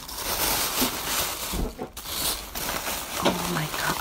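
Tissue paper rustling and crinkling in quick, irregular bursts as hands dig through a gift's wrapping and paper filler.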